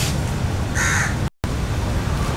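A crow cawing once, a harsh call about a second in, over a steady low outdoor rumble. The sound drops out for a split second just after the call.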